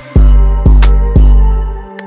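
West coast hip-hop beat playing back from the producer's software: deep sustained bass notes under steady synth chords, with three sharp percussion hits about half a second apart. The bass drops out near the end, leaving the chords.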